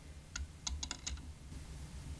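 Handling noise: a quick run of about six light clicks and taps in the first half, as a hand touches the sculpture, over a low steady hum.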